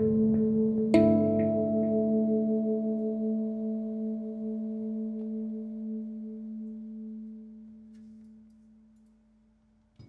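Handpan notes ringing; a fresh note is struck about a second in, and its low tone with its octave and a higher overtone rings on, fading slowly with a slight wavering until it has nearly died away near the end.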